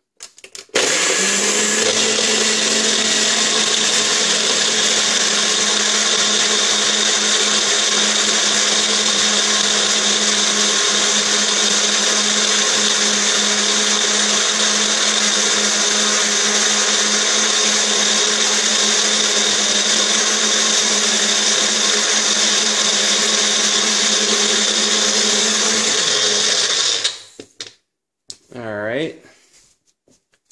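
A Magic Bullet and a Nutribullet 600 bullet blender running together, loud and steady, blending frozen berries, banana and ice with liquid into a smoothie. The motors start about a second in and stop suddenly a few seconds before the end, followed by a brief short sound.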